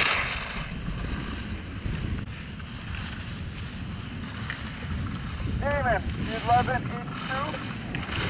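Wind buffeting the microphone in a steady low rumble. At the very start a skier's edges scrape the snow in a fading hiss, and about six seconds in a distant voice calls out three times.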